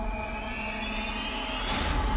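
Cinematic trailer sound design: a low rumbling drone under held tones, with a thin whine slowly rising in pitch and a whoosh near the end.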